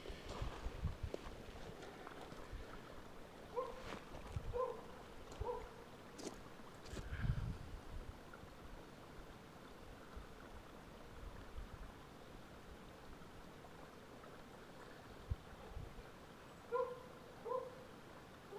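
Short pitched animal calls, three in a row about a second apart and three more near the end, over quiet outdoor background with a few low thumps.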